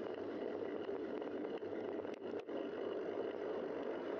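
Steady rushing wind and tyre noise from a bicycle in motion, heard through the bike camera's microphone, with two brief dips a little after two seconds in.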